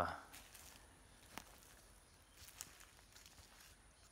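Faint footsteps and light rustling in dry leaf litter, with a few soft ticks about one and a half and two and a half seconds in.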